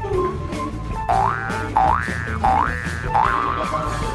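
Background music with a steady bass line, over which a cartoon 'boing' sound effect rises in pitch four times in a row, starting about a second in.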